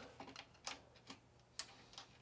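A few faint, irregular small clicks as a servo horn is worked by hand onto a servo's toothed output shaft.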